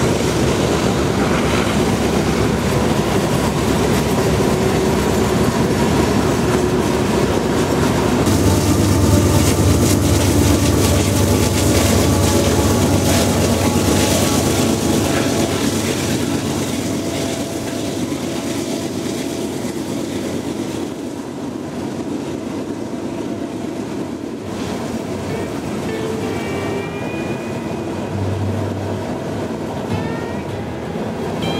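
Canadian Pacific freight train passing on a curve. The diesel locomotives' engine drone is loudest roughly a third of the way in as they go by, then fades into the rolling rumble and clicking wheels of the freight cars.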